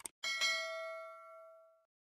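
Subscribe-button animation sound effect: a quick double mouse click, then a single bright bell ding that rings out and fades away over about a second and a half.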